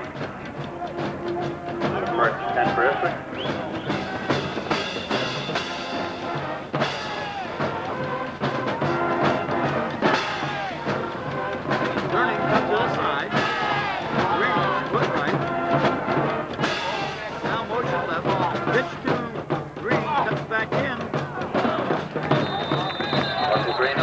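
Music with brass and drums mixed with crowd voices throughout. A steady high whistle sounds near the end as the play is stopped, a referee's whistle.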